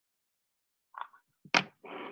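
A few short clicks and knocks of a homemade fidget-spinner turntable (a CD on a bottle cap) being handled and set down on a wooden tabletop. They start about a second in, and the sharpest knock comes about halfway through.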